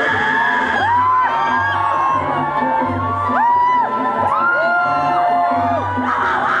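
Live pop-rock band music played loud in a concert hall, with many crowd voices whooping and singing along over a low bass pulse.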